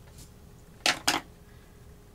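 Two quick clacks a fraction of a second apart as a pair of metal scissors is put down on a hard tabletop.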